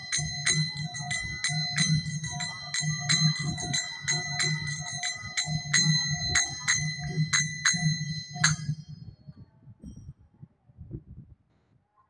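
A pair of small brass hand cymbals (kartals) struck in a steady rhythm, each strike ringing, over a low pulsing accompaniment. Both stop about eight and a half seconds in, and then it is much quieter.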